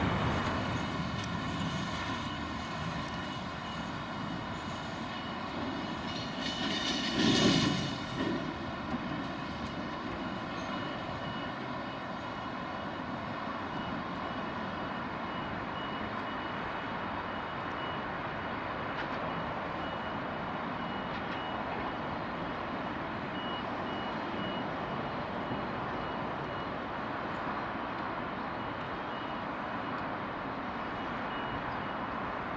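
Freight train of empty open box wagons rolling past on a curve: a steady rolling noise of wheels on rails with a faint high ringing, and a louder clatter about seven seconds in. From about halfway, a faint repeated beeping.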